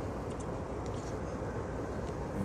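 Steady low rumble of a Volkswagen Beetle heard from inside its cabin.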